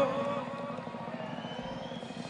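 The tail end of a man's voice over the PA fades in the first half-second, followed by a low, steady murmur of an outdoor concert crowd and stage ambience between songs.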